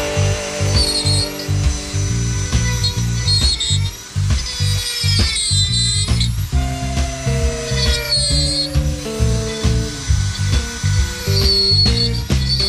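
Handheld Dremel rotary tool whining in several short bursts as it carves into driftwood, its pitch dipping under load near the middle. Background music with a steady beat plays throughout and is the loudest sound.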